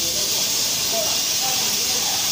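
Steady, loud hiss of rushing air, strongest in the upper range, from air flowing at a dust-collector unit with its pleated cartridge filter being handled.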